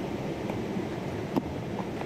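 River water running steadily, with a single short click about a second and a half in.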